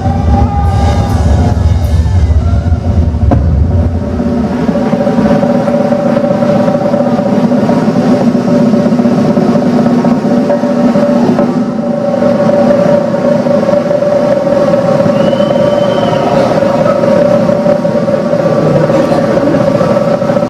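Rock drum kit played live: heavy bass-drum playing with sharp hits for about four seconds, then a fast, sustained drum roll with cymbals ringing that holds steady.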